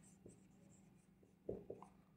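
Faint sound of a marker pen writing on a whiteboard, a few short strokes coming near the end.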